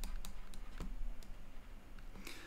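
Stylus tapping on a tablet screen while words are handwritten: a handful of faint, irregular clicks, most of them in the first second or so.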